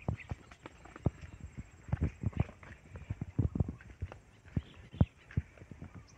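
Footsteps on a dirt track strewn with dry palm fronds and twigs: a series of soft, irregularly spaced thuds and crunches.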